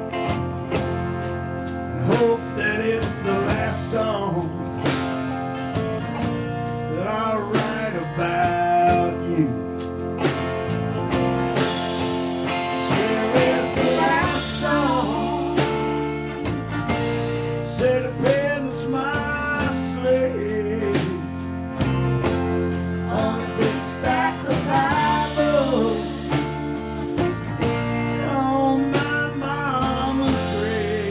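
Live rock band with a country-blues feel playing an instrumental passage: an electric guitar lead with bent, wavering notes over steady bass and drums.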